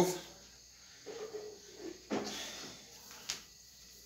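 Quiet room with faint handling noises and a little low voice: a sudden knock about two seconds in and a short sharp click about a second later.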